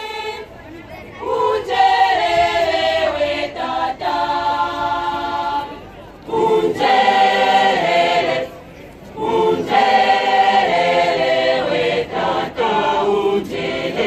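Choir singing a hymn in harmony, phrase by phrase, with short breaths between phrases about a second in, near six seconds and near nine seconds.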